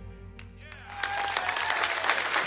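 The band's final chord rings out and fades. About halfway through, the studio audience breaks into applause.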